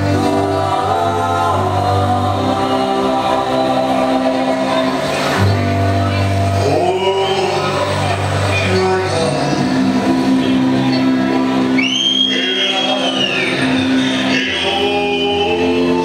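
A recorded song with singing over a musical backing, playing steadily without a break.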